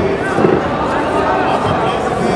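Indistinct voices of several people talking at once in a sports hall.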